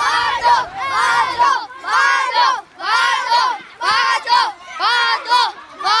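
A group of children shouting together in unison, in an even rhythm of about one shout a second.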